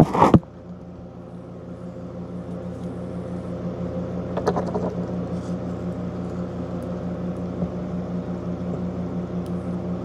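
Steady electric hum of reef-aquarium pump equipment, a low drone holding a few fixed tones, slowly getting louder.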